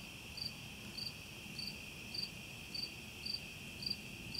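Crickets chirping: a steady high trill with a short higher chirp repeating just under twice a second.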